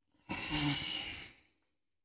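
A man's long, heavy sigh, a breathy exhale with a little voice in it, lasting about a second and fading out: a sigh of exasperation.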